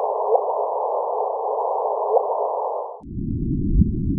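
Audio rendering of a LIGO gravitational-wave detection: a steady hiss with a short rising chirp heard twice, about two seconds apart, in a pitched-up version. About three seconds in it drops to a lower, rumbling version of the same hiss. The rising chirp is the signal of two black holes spiralling together and merging.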